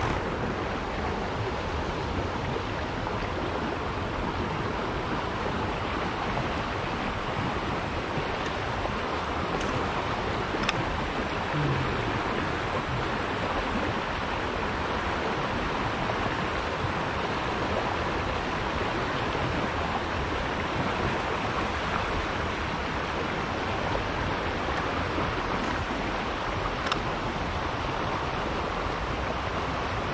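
Creek water rushing over rocks in a shallow riffle: a steady rush, with a couple of faint ticks.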